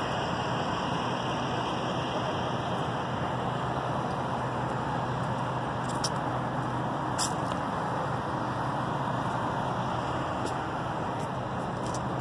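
Steady background noise of road traffic and idling vehicles, with a low constant drone and a couple of faint clicks near the middle.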